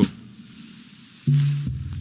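Live musical accompaniment: after a brief lull, a single low note starts about a second and a quarter in and is held steadily.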